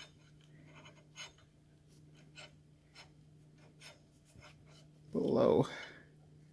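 Faint scattered clicks and scrapes of a greased steel drawbar being handled and turned in the spindle of a Bridgeport milling machine head, over a steady low hum. Near the end comes a short vocal sound from a person.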